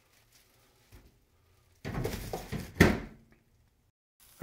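Glass lid coming off a cast-iron skillet. After a quiet first two seconds there is about a second and a half of scraping and clatter, with one sharp knock near the end.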